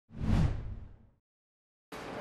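A single whoosh sound effect with a low thump under it, swelling quickly and fading out within about a second: the transition sting that opens a TV news report.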